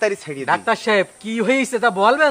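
A man talking in Bengali; only speech, with no other sound standing out.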